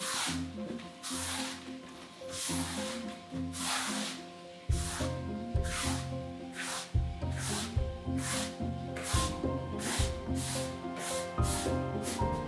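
Paintbrush swishing across a wall in a run of short strokes, laying on limewash paint. Background music plays under it, and a bass line comes in about halfway through.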